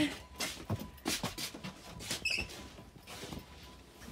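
Rustling and shuffling of shoes and clothing while changing footwear on a wooden floor, with several light knocks and a brief high squeak a little past two seconds in.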